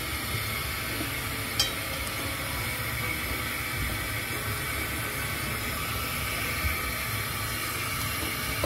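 A steady hiss with a low hum underneath, the kitchen's background noise, with one light click about one and a half seconds in.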